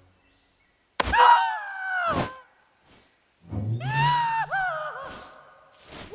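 Cartoon soundtrack: after a moment of silence, a sudden thump about a second in, then two pitched sounds that bend and fall in pitch, over music.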